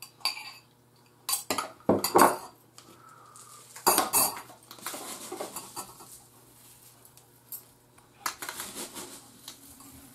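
Metal spoons knocking and scraping against bowls while stuffing ingredients are scraped out and mixed. There are several sharp clinks, the loudest about two seconds in and again about four seconds in, with softer scraping between them.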